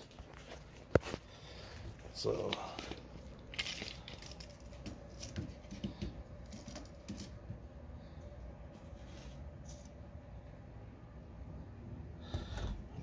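Scattered small clicks and rustles of a baseboard trim piece and a tape measure being handled on a workbench, with one sharp click about a second in.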